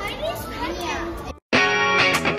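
Children's voices talking over one another, cut off abruptly about one and a half seconds in; after a brief silence, background music with a strummed guitar starts.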